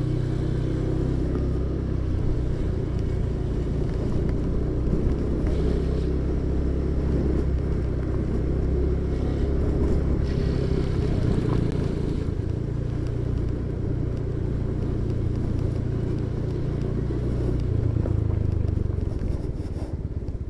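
Motorcycle engine running steadily at low speed, heard from the rider's seat, easing off slightly near the end.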